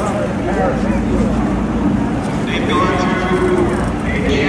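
People talking among themselves around the camera, several overlapping voices, over a steady low engine drone.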